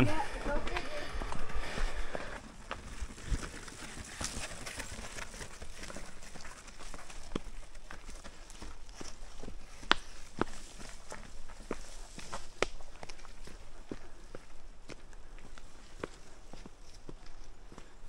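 Mountain bike riding over a rocky trail, heard from a mounted camera: a steady rustling rumble of tyres on dirt and stone with many scattered sharp clicks and knocks from the bike.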